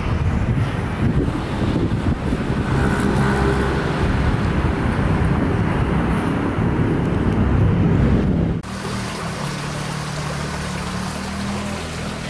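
Street background noise: a steady low rumble of traffic. About two-thirds of the way through it changes abruptly to a quieter, steadier low hum.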